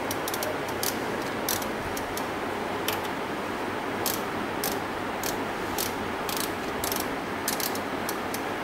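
Irregular sharp mechanical clicks, some coming in quick clusters of two or three, over a steady even hiss.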